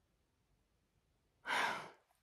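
A woman's short sigh: one breathy exhale about a second and a half in.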